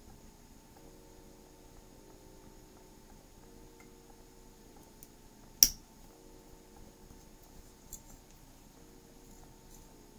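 A single sharp metallic snip about halfway through, typical of small jewellery cutters closing on fine chain, followed by a couple of much fainter clicks of tool handling.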